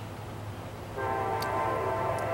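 A train horn starts about a second in and holds as one steady, unwavering chord of several tones. A low steady hum runs underneath throughout.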